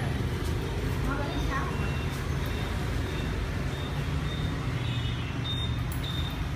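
Steady low rumble of street traffic, with faint voices about a second in.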